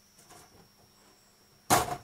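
A rabbit being set down on the grooming table: a short, loud scuffling thump near the end.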